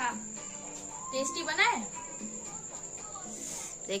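A woman's voice in a few short spoken bursts, over a steady, continuous high-pitched tone.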